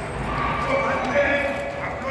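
A voice singing in long held notes.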